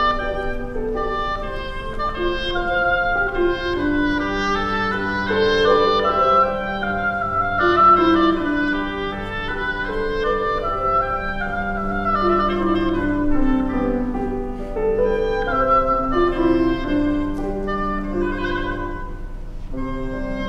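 Oboe playing a melody over grand piano accompaniment in a classical piece.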